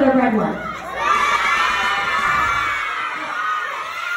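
A crowd of young children shouting and cheering together. The cheer swells about a second in and fades toward the end.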